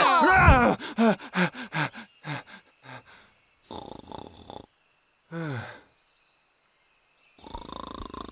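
A cartoon character's wordless vocal sounds: a short run of fading laughs, then a breathy sound and one drawn-out groan, with gaps of near quiet between them.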